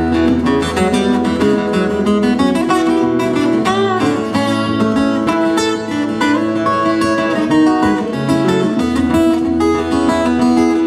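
Two acoustic guitars playing together in an instrumental break of a folk-country song: strummed chords with picked melody notes over them.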